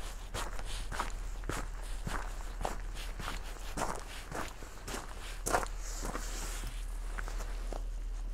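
Footsteps on a gravel track at a steady walking pace, about two steps a second, thinning out to a last few steps near the end.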